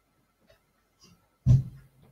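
A person's breath puffing onto a close microphone: one loud, short, low puff about one and a half seconds in, with a few faint breathy ticks around it.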